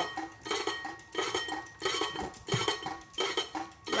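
Harbor Breeze Cheshire ceiling fan running while set on the floor, its turning parts scraping against the side with a clinking scrape that repeats roughly every two-thirds of a second.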